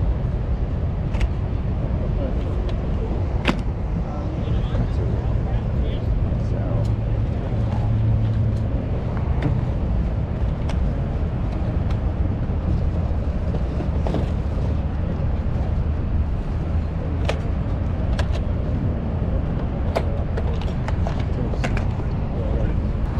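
Open-air ambience with a steady low rumble, and a few sharp clicks of plastic cassette tape cases being picked up and handled.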